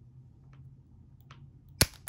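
Wire stripper/crimper tool's bolt-cutting hole shearing a 6-32 machine screw as the handles are squeezed: two faint clicks, then one sharp snap near the end as the screw cuts through.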